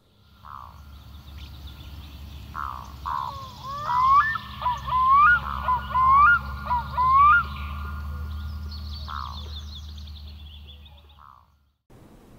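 Sound-effect bird calls, a string of short rising and hooked notes that are loudest in the middle, with fainter high chirping, over a low steady hum. It all fades out shortly before the end.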